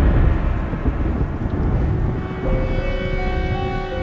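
A deep rumbling boom from the display's soundtrack, loudest in the first moment and dying away over about two seconds, under music. About halfway in, held chords of soundtrack music take over.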